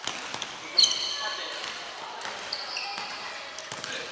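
Futsal being played in a large gymnasium: sneakers squeaking sharply on the hardwood floor and the ball knocking and bouncing, with players calling out. The loudest squeak comes about a second in, another about two and a half seconds in.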